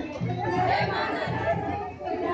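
Several people's voices chattering at once over background music.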